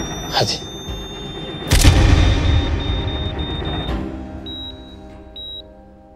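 Dramatic music under a single deep boom about two seconds in, as the defibrillator shock is delivered. It fades, and then a heart monitor beeps about once a second near the end: the heartbeat has come back after the shock.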